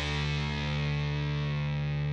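Rock outro music: a single distorted electric guitar chord, held and ringing out steadily after the final strikes.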